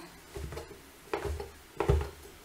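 Kitchen knife cutting through slices of toast and knocking on a plastic cutting board, three short cuts about two-thirds of a second apart, the last the loudest.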